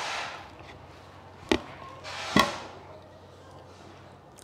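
Two sharp knocks about a second apart, the second louder: a plate knocking against a plastic stool as it is nudged during eating.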